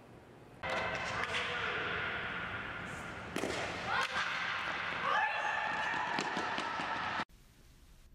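Ambient sound of an indoor softball practice: a steady background hum with occasional thuds and faint voices, cutting off abruptly near the end.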